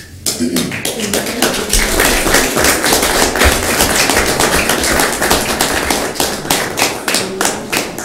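A roomful of people applauding, with dense hand claps that start just after the beginning and thin out near the end.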